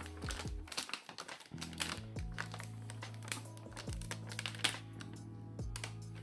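A plastic bag crinkling in many quick little clicks as plaster powder is tipped from it into a paper cup, over background music with steady held notes.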